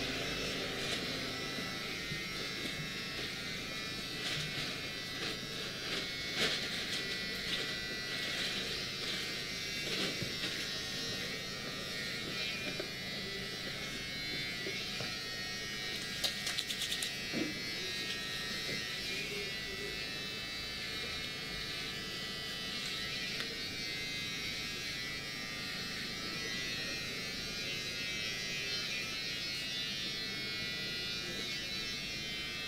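A steady electric buzz runs throughout, with faint hand-massage sounds over it and a quick run of sharp clicks about sixteen seconds in.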